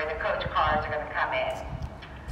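A person's voice talking, over a steady low rumble.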